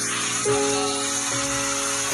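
Slow Korean ballad music: a few sustained chords held through a short pause between sung lines, with no voice in them.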